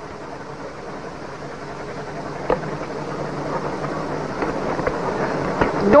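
Steady mechanical rumble of a motor boat's engine underway, growing louder as it goes, with a sharp knock about two and a half seconds in.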